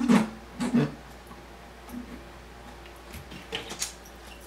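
Short knocks and clicks of metal parts being handled as the spark-gap adjuster on an old high-frequency coil is set, two in the first second and a few sharp clicks near the end.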